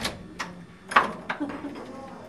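Keys on a keyring clinking, with several sharp metallic clicks (the loudest about a second in) as a key is worked into a door lock.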